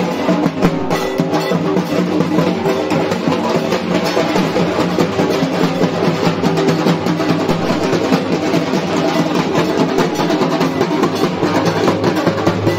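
Dhak drums, the large barrel drums of Bengal, beaten with thin sticks in a fast, unbroken rhythm of dense strokes.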